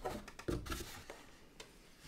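Handling noise from a black plastic tea-tray drain tray being lifted and turned over: a few soft knocks and taps near the start and about half a second in, then fainter rubbing that dies away.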